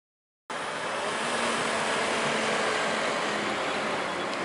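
Steady street traffic noise with a tram approaching along its track, cutting in suddenly about half a second in after silence.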